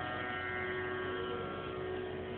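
Sarod strings ringing on steadily after a plucked note, with no new stroke, over a steady electrical mains hum from the sound system.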